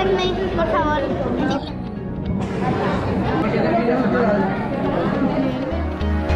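Many people talking at once in a busy restaurant dining room, with a close voice over the general chatter. Background music with a steady beat comes in near the end.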